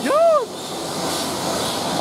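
A brief rising-and-falling whoop from an excited onlooker, then a steady hiss of steam from the standing locomotive, SR Merchant Navy class No. 35028 Clan Line.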